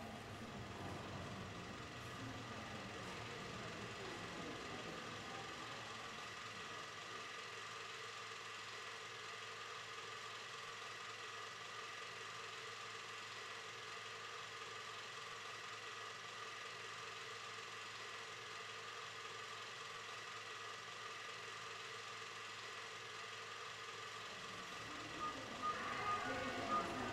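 A faint, steady hum with a thin high whine held on a couple of pitches.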